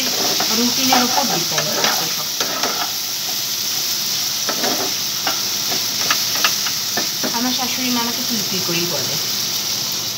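Food sizzling steadily in hot oil in a pan, with scattered clicks and scrapes of a utensil against the pan as it is stirred.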